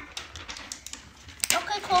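Faint small clicks and rustles of sticker sheets and stickers being handled, then a child speaking from about halfway through.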